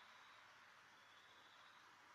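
Near silence: a faint steady background hiss with a faint, steady high tone.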